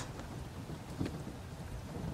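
Faint, steady low rumble of wind on the microphone, with a small knock about a second in.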